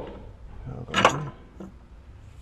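A single sharp metal knock about a second in, from work on the front steering linkage (drag link and tie rod end), with a short grunt-like voice sound around it.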